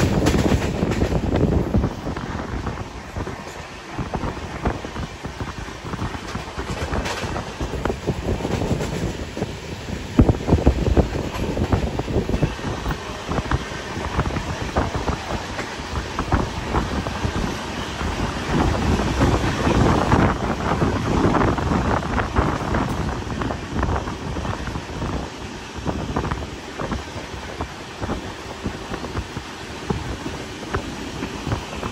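Coaches of the Patna–Ranchi Jan Shatabdi Express running along the track, heard from an open doorway: a steady rumble and clatter of steel wheels on the rails, with wind buffeting the microphone. It is louder for the first two seconds.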